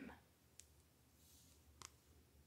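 Near silence with a few faint, sharp clicks, one about half a second in and a pair near the end, and a brief faint scratchy hiss in the middle.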